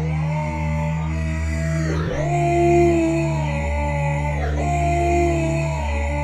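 Grime instrumental loop from the Launchpad app's London Grime sound pack: a steady deep bass under a held synth lead that swoops down in pitch and back up about two seconds in.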